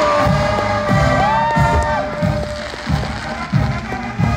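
College marching band playing live: the brass holds long notes over a run of bass drum strokes, with a higher note sliding up and holding for about a second early on.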